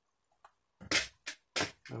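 Three short clicks and clatters of handling about a second in, the first the loudest: a clear plastic parts cup and small rivet hardware being picked up and handled.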